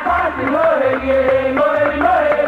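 Igbo women's traditional music: women singing a chant-like melody over percussion, with sharp clicking strikes and a low drum beating steadily about twice a second.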